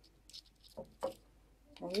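A few faint, brief rustles of a paper cupcake case as a chocolate-coated cake pop is picked up off a plate.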